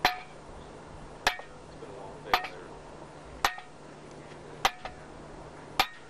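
Sharp metallic strikes at an even pace of about one a second, each with a brief ring.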